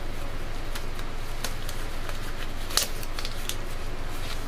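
Thin disposable gloves being pulled on and worked over the fingers: scattered small rustles and crackles with a sharper snap about three seconds in, over a steady low background hum.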